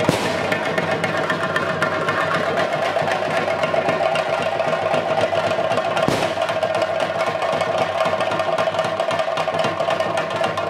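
Fast, continuous drumming, with a steady ringing tone sustained above the strokes, typical of the chenda drums that accompany a Theyyam. There is an abrupt cut about six seconds in, after which the drumming runs on unchanged.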